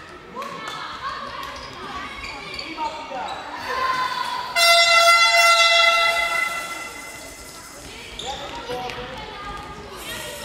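A sports hall's electric horn sounds once, a steady buzzing tone of nearly two seconds that starts suddenly about halfway through, over the shouts of young players and the echo of the hall.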